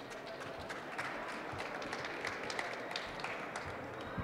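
Scattered applause from a small audience following a speech.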